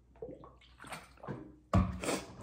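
Gulps of water drunk from a plastic sports bottle, the liquid sloshing softly, then a thump near the end as the bottle is set down on the table.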